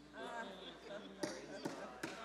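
A voice speaking or reacting briefly in a large room, not clearly worded, followed by two sharp knocks about half a second apart.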